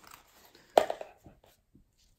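A single sharp knock about a second in, followed by a few lighter clicks: rolls of washi tape being set down and shuffled on a tabletop.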